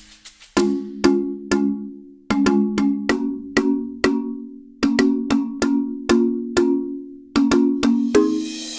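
Background music: a percussive track of struck, cowbell-like notes, about two strikes a second, over a held low tone, with two short pauses, one early and one midway.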